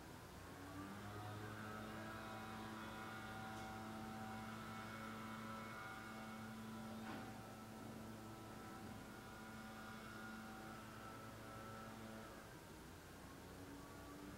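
A faint, steady machine hum with several held tones, starting about a second in and fading out near the end, with a single faint click about halfway through.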